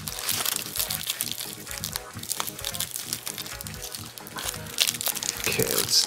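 Crinkling of an aged Nestlé Crunch bar's foil-and-paper wrapper as it is peeled open by hand, a busy run of small crackles, with music playing in the background.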